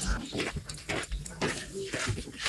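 Faint voices with scattered short clicks and rustles in a lecture hall, during a pause in the talk.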